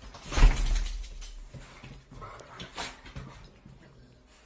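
A loud bump about half a second in, then scattered soft sounds from a Rottweiler that fade away toward the end.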